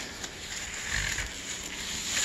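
White packing wrap rustling and crinkling as it is pulled off a guitar neck by hand, with a soft low bump about a second in.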